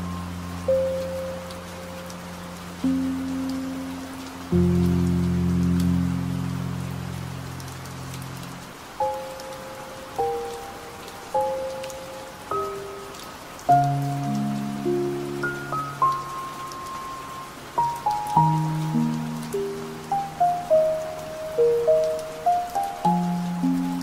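Slow, sparse piano melody over a steady bed of rain. Low sustained chords ring out in the first half; from about 18 seconds single notes come faster, in short running figures.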